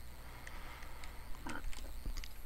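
Quiet room tone with a low hum and a few faint light taps, from a stylus writing on a pen tablet.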